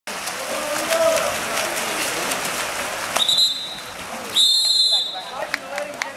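Water polo referee's whistle blown twice: a short blast about three seconds in, then a longer, louder blast about a second later, calling a kickout (an exclusion foul). Before the whistle there is a steady wash of splashing and voices.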